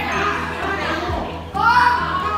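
Young students' voices chattering and calling out over background music, with one loud voice rising in pitch near the end.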